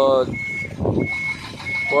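A box truck's reversing alarm beeping in a steady high tone, three beeps about two-thirds of a second apart, over the low rumble of the truck's engine.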